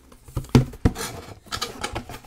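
Printed cardboard diorama panels being handled and fitted together: a few sharp knocks in the first second, then lighter scraping and tapping near the end.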